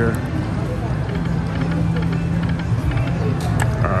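Video slot machine spinning on a casino floor: a steady low hum of the room with electronic game tones and background chatter, and a few light clicks near the end.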